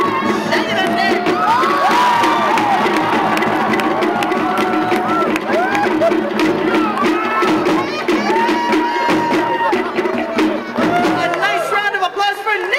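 Live band music for a Polynesian dance show, with rapid drumming. A crowd is whooping and cheering over it, many calls rising and falling in pitch.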